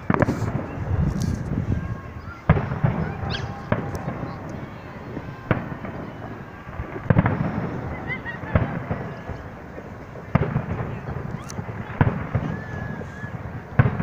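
Fireworks display: aerial shells burst in the distance with about nine sharp bangs, roughly one every second and a half, each trailing off in a low echo.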